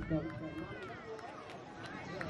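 Faint voices of people at an outdoor football pitch talking and calling out in the background, with a few light clicks.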